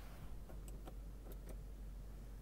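Quiet background with a steady low hum and a handful of faint, scattered clicks.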